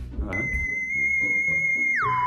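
Edited-in electronic comedy sound effect: a steady high synthetic beep that begins a fraction of a second in and holds, then drops sharply in pitch right at the end, over soft background music.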